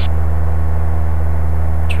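Steady low drone of a light aircraft's engine and propeller in cruise, heard inside the cockpit. A voice alert, "trim up", begins right at the end.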